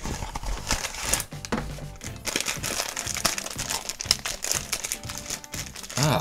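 Cardboard blind box being torn open and the foil bag inside crinkled and pulled apart by hand, a dense run of irregular crackles and rustles, over background music.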